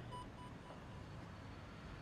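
A quick row of short electronic beeps at one pitch, each softer than the last, fading out within the first second, followed by a faint low steady hum.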